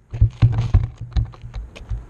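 Sneakers scuffing on gritty pavement and a hand handling the board right beside the microphone. A quick, irregular run of clicks and light knocks sits over a low hum.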